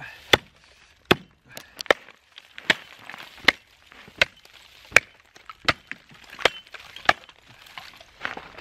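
Hatchet chopping into thick ice: a steady series of about eleven sharp strikes, one every three-quarters of a second or so.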